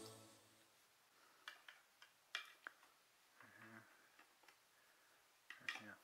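Near silence, with a few faint, scattered clicks and taps from small hardware and wooden parts being handled during furniture assembly.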